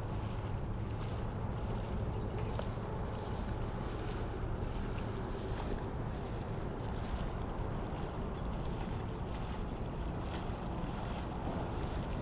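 Steady wind rushing over the microphone of a head-worn action camera, with a low rumble and a few faint clicks.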